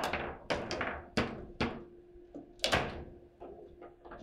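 Table football in play: a rapid, irregular run of about nine sharp knocks and clacks as the ball is struck by the plastic figures and bangs off the table, each hit with a short ring after it.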